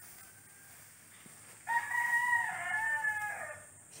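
A rooster crowing once: a single drawn-out crow of about two seconds that starts a little before halfway through, over a quiet background.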